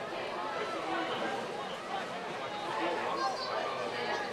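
Indistinct chatter and calls from several people's voices, overlapping with no clear words.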